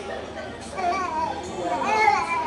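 Young children's voices chattering, with a child's high-pitched voice rising above the others twice, louder the second time near the end.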